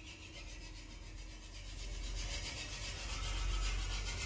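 Handling noise from a hand-held camera being moved: a rubbing, rasping hiss over a low rumble, growing steadily louder.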